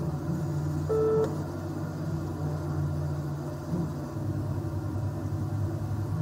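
Steady low car engine and road hum from an in-car study video played over a hall's loudspeakers, with one short electronic beep about a second in.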